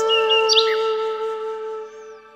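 Background music: a flute holds one long note that slowly fades out, with a few short, high, bird-like chirps over it in the first half second.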